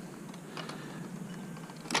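Quiet handling noise as a bungee cord is brought around fishing rods on a plastic rod transporter: a few faint light clicks and rattles over a low steady background hiss.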